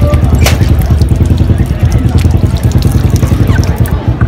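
Water running from the plastic tap of a handwashing container and splashing over hands, under a loud, steady low rumble.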